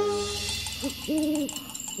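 An owl hooting: a short hoot about a second in, then a longer, steady hoot, with a third beginning at the very end.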